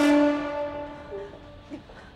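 A single held note of dramatic background music, steady and rich in overtones, fading away over the first second. A faint, brief muffled voice-like sound follows.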